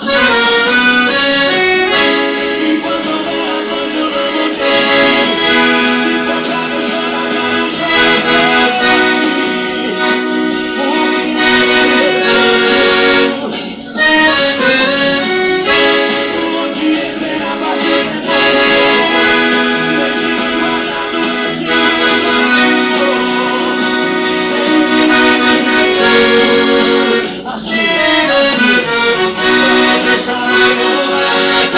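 Solo Maestrina piano accordion playing a melody on the treble keyboard over chords and bass notes from the left-hand buttons, steady and loud, with two brief dips in the sound, about fourteen and twenty-seven seconds in.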